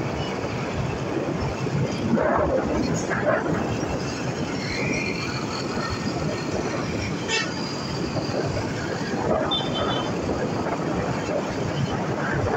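Steady noise of a motorcycle ride through city traffic: wind rushing over the microphone, with the motorcycle's engine and passing vehicles underneath.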